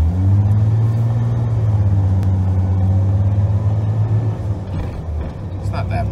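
1993 Ford F-150's 4.9-litre straight-six engine heard from inside the cab while driving. The engine note climbs in the first half-second as the truck pulls away, holds steady, then drops about four and a half seconds in.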